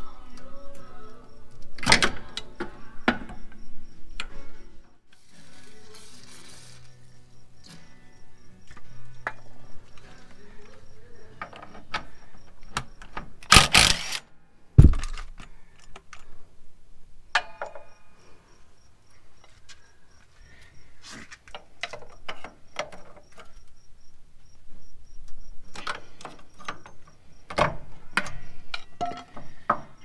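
Background music over hand work on a rear suspension. There are scattered metal clinks from tools, a short run of a cordless Ryobi power tool on the 17 mm lower shock bolt about halfway through, and a low thud right after it.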